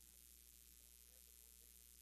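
Near silence: a faint steady hum with hiss.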